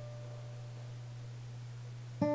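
Acoustic guitar notes ringing out and slowly fading, with no new strum, over a steady low hum.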